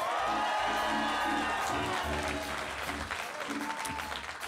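Live audience cheering and applauding over band music with a steady beat.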